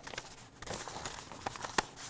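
Faint rustling and a few light clicks from a sheet of paper being rolled up and handled, with one sharper click near the end.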